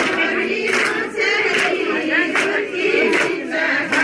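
A group of women singing a traditional Darai Sohrai dance song together, loud and continuous, with a sharp beat a little more than once a second.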